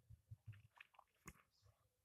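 Near silence with faint, brief scratching of a pen writing on paper, and one small click about a second in.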